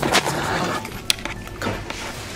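Handling noise from the camera being picked up and carried: rustling and bumps, with a single sharp click about a second in.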